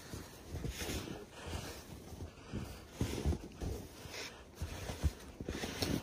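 Deep snow crunching as boots kick and tramp through it and a snow shovel digs into it: irregular soft crunches and thuds, a second or so apart.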